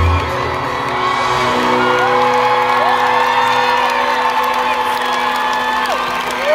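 Live pop band playing the end of a song, the bass and drums dropping out just after the start and leaving held chords, while the crowd cheers and whoops.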